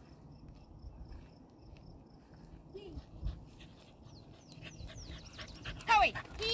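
A corgi's excited whines: a run of short, high squeaks falling in pitch over the last two seconds, ending in a louder falling yelp.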